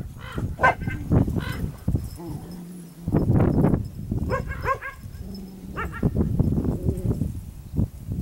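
Short animal calls, a few in quick succession about four seconds in, over a rough low-pitched noise.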